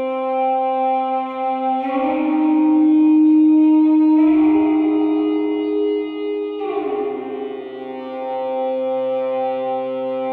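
Slow instrumental music of held chords, changing about every two seconds.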